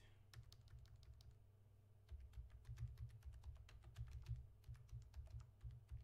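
Faint typing on a computer keyboard: a quick, uneven run of key clicks, with dull thuds from the keystrokes joining in about two seconds in.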